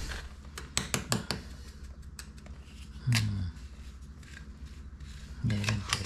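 A small hand tool packing cement mortar into a hole under a broken floor tile, with a quick run of sharp clicks as the metal tip knocks and scrapes against the tile edges about a second in.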